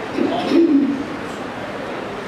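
A woman's voice through a microphone holds one drawn-out pitched syllable for under a second near the start, over steady hiss.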